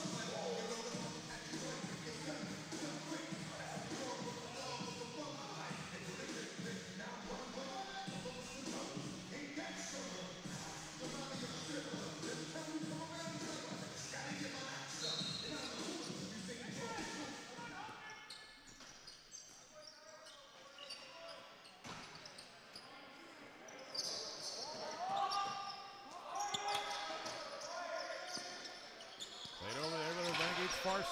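Hockey-arena ambience at a box lacrosse game. Music over the PA, with crowd voices, runs through the first half and fades out. After that come players' shouts and sharp knocks of the ball and sticks on the arena floor, busiest near the end as play restarts.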